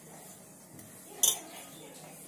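A hand working dry flour in a stainless steel bowl, with a faint rubbing sound. A little over a second in there is a single short, bright clink as the bangles on the wrist knock against the steel bowl.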